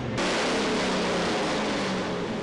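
Car running on a chassis dynamometer, its driven wheels turning the rollers as it slows after a run, with a steady rushing noise. The sound changes abruptly just after the start to a brighter, hissier mix.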